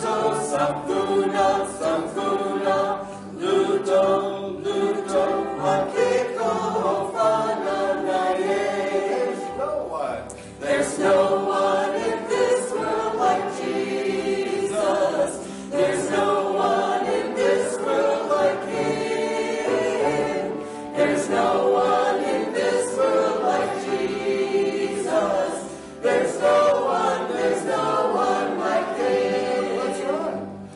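A congregation singing a hymn together, led by a small group of song leaders. The singing comes in phrases broken by brief pauses about every five seconds.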